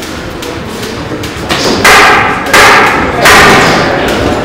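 Boxing gloves landing punches: three loud thuds about 0.7 s apart in the second half, each with a short echo in the hall.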